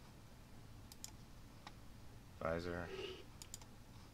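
A few quiet, sharp clicks at a computer, several in quick pairs, as lighting modes are selected in software. A man's voice gives a short hum a little past halfway.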